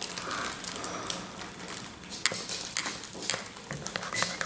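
A metal spoon stirring cereal and milk in a ceramic mug. It clinks sharply against the mug three times, about half a second apart, in the second half.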